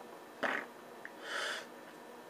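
A man's breathing: a short, sharp nasal breath about half a second in, then a softer, longer breath a second later.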